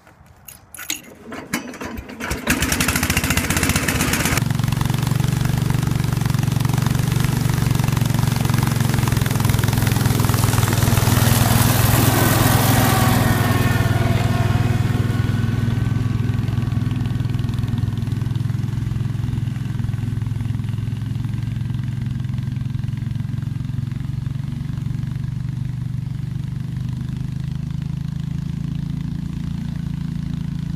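Cub Cadet 125 garden tractor's single-cylinder Kohler engine being started on the key with the choke on: a couple of seconds of cranking, then it catches and runs steadily, a little louder for a few seconds before settling.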